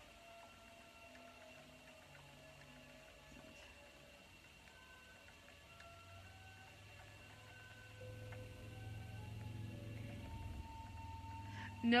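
Spinning wheel turning as yarn is plied: a low, steady whir that comes in about halfway through and grows louder, under faint background music.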